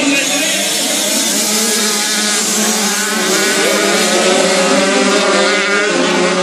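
A pack of 85cc two-stroke racing motorcycles at full throttle through a bend, several engines overlapping with their pitches rising and falling as the riders accelerate.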